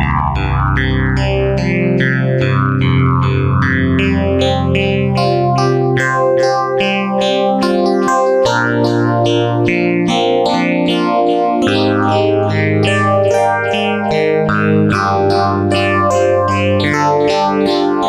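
Korg MS2000 virtual-analog synthesizer playing a custom-programmed patch: quick runs of short notes over held low bass notes, which change about eight and about twelve seconds in.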